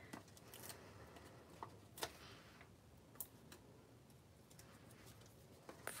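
Faint paper handling: a few light, separate clicks and crinkles as foam adhesive dimensionals are peeled off their backing sheet, the sharpest about two seconds in.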